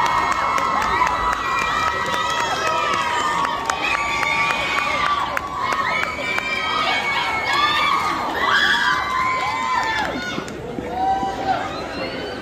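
Hall crowd cheering and shouting, many high-pitched voices, children's among them, overlapping loudly and easing off a little near the end.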